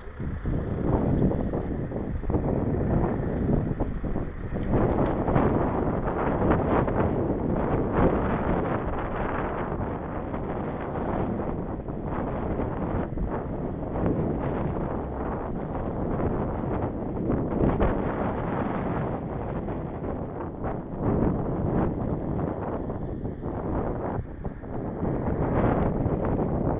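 Wind buffeting the microphone of a camera on a moving bicycle: a loud, steady rushing noise that swells about a second in as the ride picks up speed.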